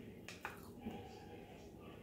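Faint sounds of someone eating bread pudding: quiet chewing and mouth sounds, with two small clicks close together about a third of a second in.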